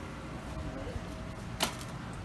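A single sharp click or knock about one and a half seconds in, over a low steady background.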